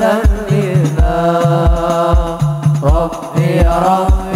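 Hadroh ensemble: male voices singing a devotional chant over frame drums (rebana) that beat a steady rhythm. The deep drum strokes come about three times a second under the sung melody.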